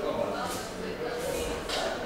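Speech: a voice talking in a large hall.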